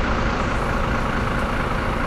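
A heavy road vehicle's engine running close by, a steady low rumble mixed with street traffic noise.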